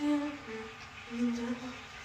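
A woman humming a tune with her mouth closed: a few short held notes that slide from one pitch to the next, the longest about a second in.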